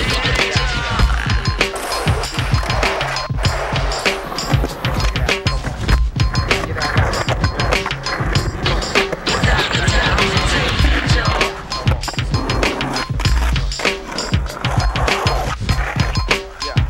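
Skateboard sounds: urethane wheels rolling on concrete, trucks grinding, and the sharp clacks of tail pops and landings. They run over a hip-hop backing track with a steady, repeating beat.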